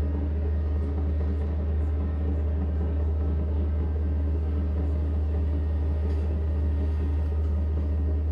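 Amplified electronic drone music: a loud, steady low hum with layers of sustained tones held above it, unchanging in level.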